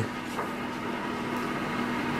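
Steady low room hum and hiss, like an air conditioner running, with a faint papery rustle as a picture-book page is turned.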